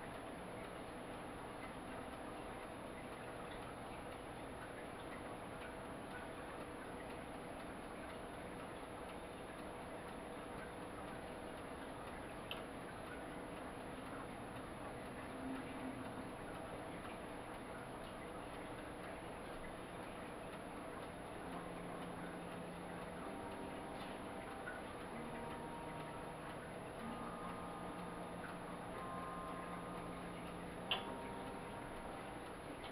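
Quiet kitchen room tone: a faint steady hum with a thin high-pitched whine, and light ticking.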